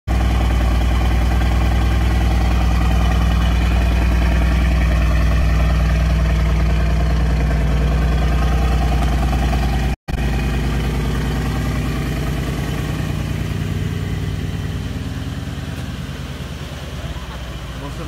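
Mercedes-AMG C63 S Estate's twin-turbo V8 idling steadily and loudly through decat (cat-bypass) downpipes, with a strong low tone. The sound cuts out for a split second about halfway through, then the idle carries on slightly quieter.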